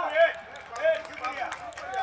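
Men's voices talking and calling out through stage microphones, with pauses between phrases; a steady held tone starts near the end.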